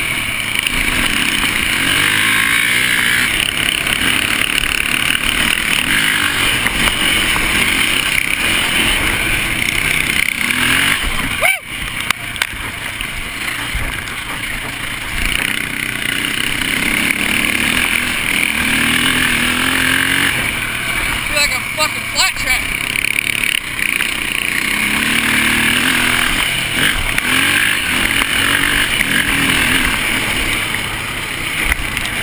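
KTM dirt bike engine running under load on a dirt trail, its pitch rising and falling as the throttle opens and closes, with a brief sharp break in the sound about eleven and a half seconds in.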